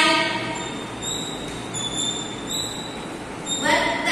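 Chalk squeaking and scratching on a blackboard as numerals are written, giving a series of short, high squeaks.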